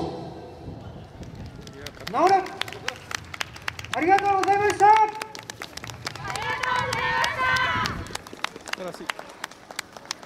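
Scattered audience clapping as a yosakoi dance team's music ends, with loud shouted calls from the dancers: one rising shout about two seconds in, a longer wavering one about four seconds in, and a group shout ending near eight seconds.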